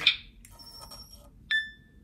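Vulcan handheld LIBS analyzer testing a metal sample: a faint high buzz for under a second, then a single clear electronic beep about a second and a half in, fading away.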